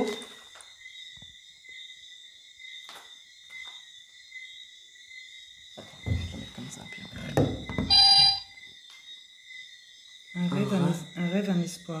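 Smartphone running the Ovilus 3 ghost-box app: a steady high-pitched electronic whine throughout, a short beep about eight seconds in, then near the end the app's synthesized voice speaking the words "un rêve, un espoir". A low rumble of handling noise comes just before the beep.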